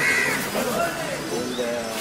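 Men's voices in outdoor bustle as a truck is loaded by hand, with a short high call at the very start.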